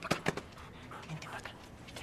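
A man's short call to a dog, then a large dog panting quietly as it comes up to the people.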